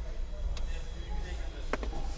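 Indistinct voices in the background over a low rumble, with a sharp click about half a second in and two quick clicks close together near the end.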